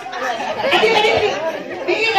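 Speech and chatter: a voice amplified through a microphone and loudspeakers, with several people talking at once.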